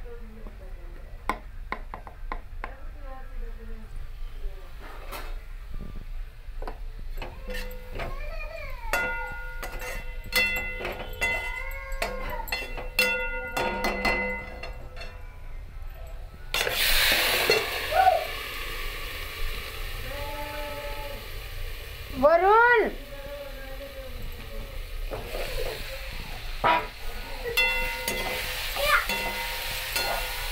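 A metal spoon clinks and scrapes in a steel kadai of frying potatoes. About halfway through, a sudden loud sizzle starts as chopped tomatoes go into the hot oil, and the frying carries on.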